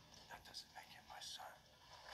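A brief line of quiet speech from the trailer's soundtrack, heard through a portable DVD player's small built-in speaker, thin and without bass.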